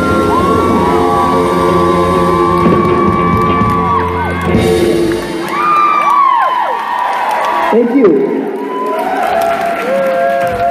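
Live rock band with electric guitars ringing out a final chord, which cuts off about halfway through, followed by the audience cheering and whooping.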